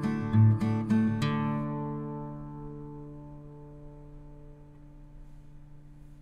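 Acoustic guitar music: a few strummed chords, the last about a second in, then that chord ringing out and slowly fading away.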